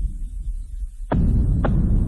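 A low, throbbing drone from the soundtrack that thins for a moment. Just past the middle come two dull thumps about half a second apart, and the low drone then swells back.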